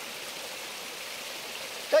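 A steady, even hiss of outdoor background noise with no distinct event in it; a voice starts right at the end.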